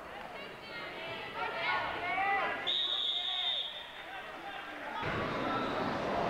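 Voices of the crowd and coaches echo in a gymnasium. About halfway through, a single steady high-pitched whistle blast lasts about a second. Near the end the crowd noise jumps abruptly louder.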